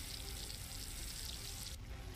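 Faint steady crackling hiss of a fire sound effect from the anime's soundtrack, with the high end dropping out briefly near the end.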